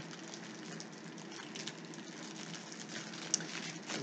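Faint rustling and light crackling of wax melt packaging being handled, with a small click about three seconds in.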